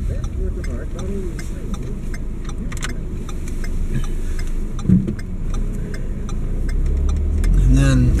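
Steady low rumble of a moving car's engine and road noise heard from inside the cabin, with quiet voices and a brief louder sound about five seconds in.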